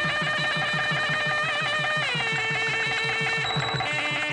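Wedding music on a film soundtrack: a held, wavering wind-instrument melody over a fast, steady drum beat. The melody slides down to a lower note about two seconds in.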